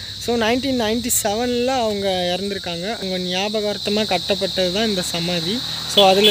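Steady high-pitched drone of insects behind a man talking.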